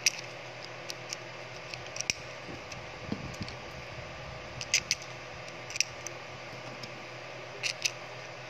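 Sharp little clicks and taps of a 3D-printed plastic magazine being handled and worked between the fingers, coming irregularly every second or so over a steady low background hum.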